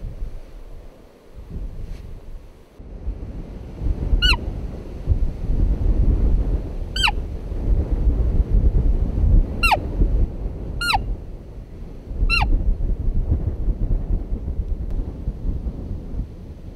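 Roe deer calling by mouth through cupped hands: five short, high-pitched squeaks, each falling in pitch, spaced a few seconds apart, imitating a roe doe to draw a buck. A low wind rumble on the microphone runs underneath.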